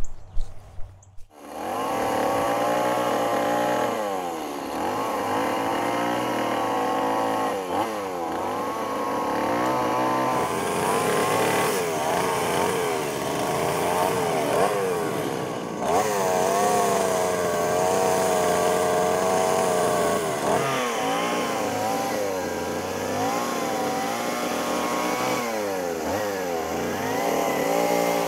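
Gas chainsaw cutting into a silver maple trunk, running at high revs from about a second and a half in. Its pitch wavers and sags again and again as the chain bites into the wood, then picks back up.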